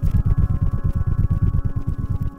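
Courtship song of a male Habronattus clypeatus jumping spider, made by beating the front and back halves of his body together and picked up as ground vibrations by a laser vibrometer: a fast, even run of low thumps, about ten a second.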